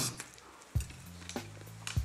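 A person chewing a mouthful of burger with the mouth closed: a few faint, soft mouth clicks about three times over a steady low hum.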